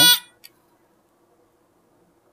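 Continuity tester's buzzer sounding a steady beep that cuts off just after the start, then a faint click about half a second in. The beep shows continuity through a 14-pin relay's normally closed (b) contact, which stays closed while the coil is unpowered.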